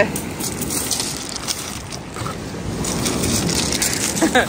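Small waves breaking on a shingle beach and washing over the pebbles, a steady hiss with a rattle of stones, swelling about three seconds in.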